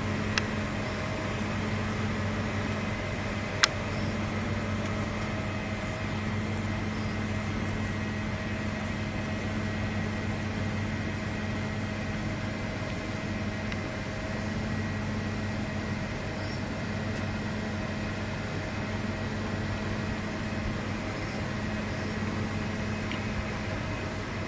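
A steady mechanical hum with a low drone, interrupted by a short click just after the start and a louder click about three seconds later.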